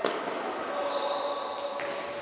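A futsal ball kicked, one sharp knock at the start echoing around a large sports hall, with a fainter knock near the end. Players' voices run underneath.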